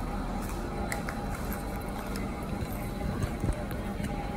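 Steady low background rumble and hum of a takeaway shop interior, with a few faint light clicks.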